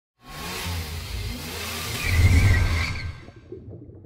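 Car engine sound effect for a logo intro: an engine revving, its pitch gliding up and down, swelling with a whoosh to its loudest about two seconds in, then fading out.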